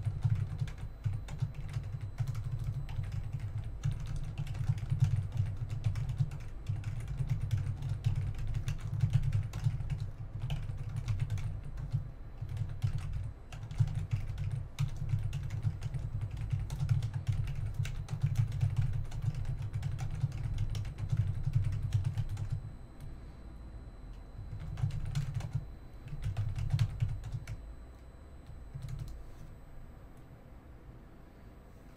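Typing on a computer keyboard: fast, steady runs of keystrokes for about twenty seconds, then a short lull and two brief bursts of typing near the end.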